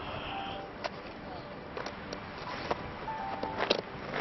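Soft background music with scattered clicks and crunches of feet and diving gear moving on a pebble beach.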